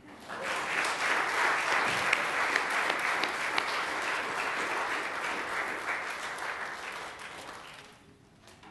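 Congregation applauding, the clapping dying away over the last couple of seconds.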